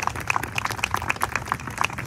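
Small audience clapping: a quick, irregular patter of separate hand claps.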